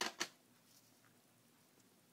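Two quick handling clicks about a fifth of a second apart, then near silence with faint room tone.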